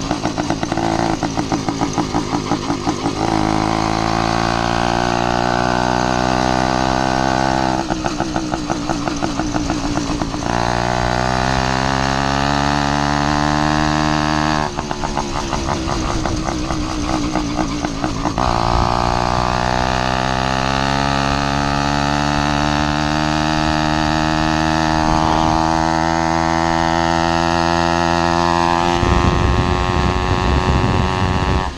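Zeda PK80 two-stroke motorized-bicycle engine under way: it runs at a steady pitch, climbs in pitch as the bike accelerates, and three times drops into a choppy, pulsing beat between pulls. A low rumble comes in near the end.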